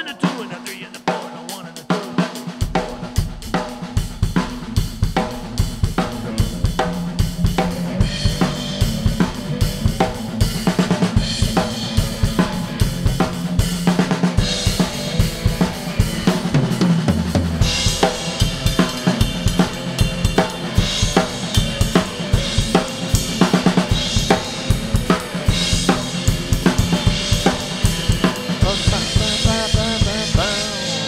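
Drum kit playing a rolling shuffle: a triplet feel on the cymbal with a rimshot backbeat on two and four on the snare, the kick drum coming in about two seconds in. An electric guitar plays along, and the cymbals get louder and brighter about eight seconds in and again past halfway.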